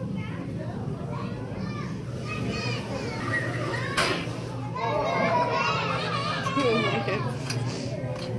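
Children's voices chattering and calling out in a busy hall, over a steady low hum, with one sharp click about halfway through.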